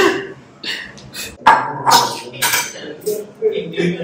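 Dishes and cutlery clattering, a run of irregular clinks and knocks.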